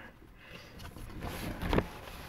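Plastic housing of a Dirt Devil hand-held vacuum being shifted and turned over on a table: a low rumbling, rubbing handling noise that builds after about a second, with one sharp knock shortly before the end.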